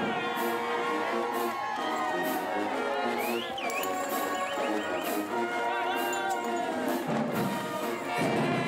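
Marching band playing, brass and flutes together, with people cheering and clapping. A high whoop rises above the band about three and a half seconds in.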